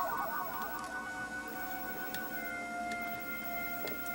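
Soft electronic tones: a warbling cluster of notes for about two seconds that settles into a few steady, held tones.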